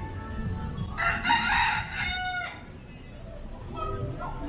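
A rooster crowing once, starting about a second in: a single loud call of about a second and a half that ends on a held note.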